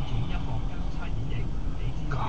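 Steady low rumble of a car idling at a standstill, heard from inside its cabin, with a voice faintly talking over it.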